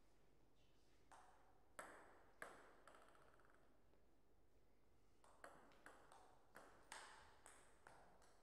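Celluloid-type table tennis ball clicking sharply on paddles and the table. A few scattered bounces come in the first three seconds. After a pause, a quicker run of about seven clicks follows in the last three seconds: a short rally.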